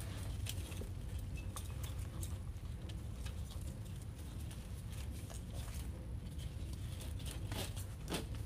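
Ribbon bow and artificial greenery being handled and pressed into a wreath: irregular rustles and light clicks, over a steady low hum.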